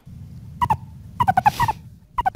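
Recorded meerkat calls played back: two short, clipped notes about half a second in, then a quick run of several more about a second in, over a steady low rumble of recording background noise.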